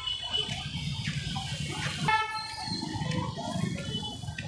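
City street traffic with a vehicle horn honking: one horn trails off just as it begins and another sounds for about half a second a little past the middle.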